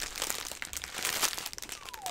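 Plastic packaging crinkling and rustling in irregular bursts as a clear plastic poly bag is pulled from a bubble-lined mailer and handled.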